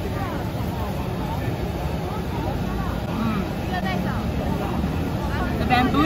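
Busy street-market ambience: a steady low rumble under faint chatter of passers-by.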